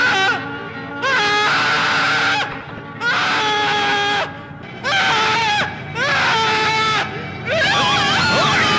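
A man wailing in a series of long, anguished cries, each about a second long with short breaks between, over background film music.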